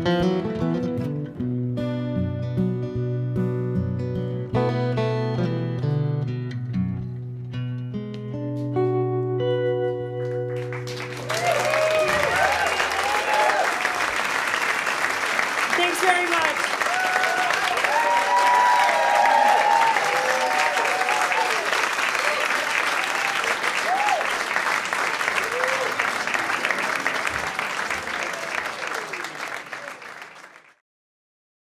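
Two acoustic guitars picking the closing phrase of a song, ending about eleven seconds in. Then an audience applauds and cheers.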